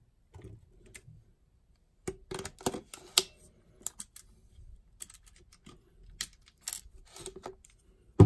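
Irregular clicks, taps and light scrapes of a Nikkor AI-S lens being twisted onto and off a Nikon camera's bayonet mount and the camera being handled, with the busiest cluster about two to three seconds in.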